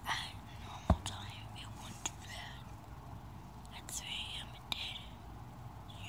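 A person whispering in short, breathy bursts, with a sharp click about a second in.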